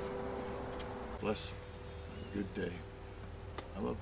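Acoustic guitar's last chord dying away, leaving a quiet pause with a faint, steady high-pitched trill. Three short, soft voice-like sounds come about a second apart.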